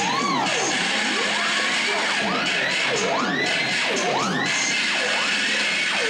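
Theremin played with hand sweeps near its antenna: a run of swooping glides, each rising and falling in pitch over about a second, over a dense wash of noise.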